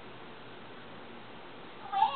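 Steady room tone and recording hiss. Near the end, a short high-pitched gliding sound begins.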